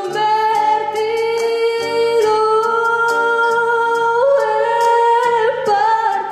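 A young woman singing solo into a handheld microphone, holding long sustained notes, with the melody stepping up in pitch about four seconds in.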